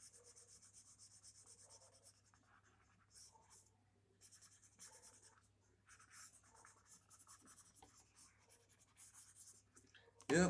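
Very faint scratching of a pencil shading on sketchbook paper, in short runs of strokes with brief pauses, over a low steady hum.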